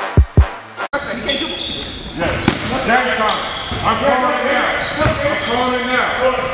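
A hip-hop beat with heavy bass drum hits cuts off about a second in. Live gym sound follows: players calling out across the court and a basketball bouncing on the hardwood floor, with a couple of sharper bounces.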